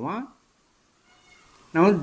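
Speech only: a man's voice ends a phrase on a rising pitch, then a pause of about a second and a half, and talk resumes near the end.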